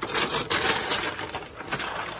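Crumpled brown kraft paper crinkling and rustling as it is handled and pulled aside, loudest in the first second.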